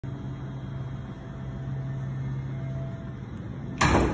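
A steady low hum, with a faint higher tone briefly joining it, then a sudden loud rush of noise near the end.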